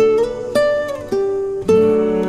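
Instrumental music: slow single plucked notes on a guitar-like string instrument, a new note about every half second, each ringing on over a held low note.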